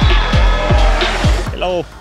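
Music with a heavy, regular kick-drum beat of about three falling bass thumps a second, mixed with a rally car's engine. The music cuts off about a second and a half in and a man starts speaking.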